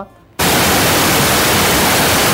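Loud, even static hiss that cuts in suddenly about half a second in, right after a man's voice stops.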